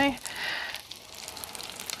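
Corn fritters frying in hot oil in an electric skillet: a soft sizzle with a brief hiss about half a second in and a few faint crackles.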